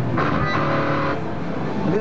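An electric guitar chord rings for about a second and then stops, over a steady background of crowd chatter.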